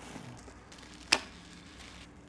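A single short, sharp snip of scissors about a second in, cutting off the gathered top of a tissue-paper bundle; otherwise faint room noise.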